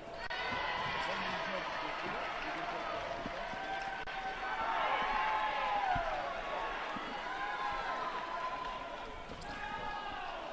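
Fencing-hall ambience during a live foil bout: many overlapping distant voices, with gliding squeak-like tones and light footfalls that fit fencers' shoes working the piste.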